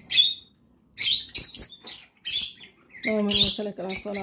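Birds chirping in short high bursts, several times a second at points. A voice reciting Arabic prayers comes in about three seconds in.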